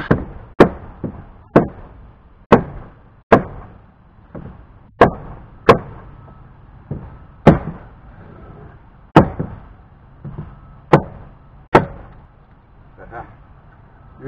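Hammer blows on a wooden porch board, about a dozen sharp strikes roughly a second apart, knocking the board loose so it can be removed.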